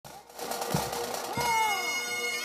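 Bagpipes playing: a steady drone under crowd voices, then the chanter coming in loudly about one and a half seconds in with a falling note, with a couple of low thumps.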